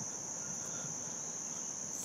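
A steady high-pitched background tone over a faint hiss, unbroken throughout, with no speech.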